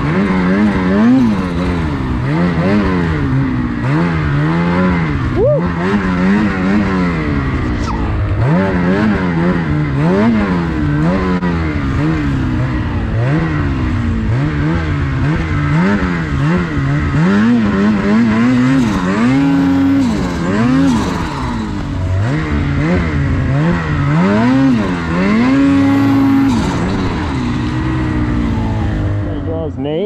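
A 2023 Ski-Doo Gen 5 snowmobile's turbocharged 850 E-TEC two-stroke engine revving up and down over and over, about once every one to two seconds, as the sled is worked through deep snow.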